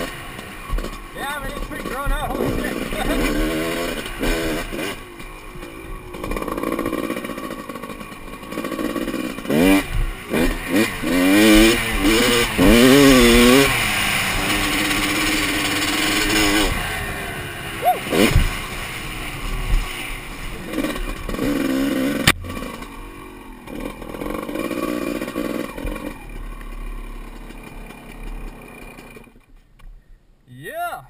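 Two-stroke dirt bike engine revving up and down over and over as it is ridden across rough ground. A single sharp knock comes about twenty-two seconds in, and the engine quietens near the end.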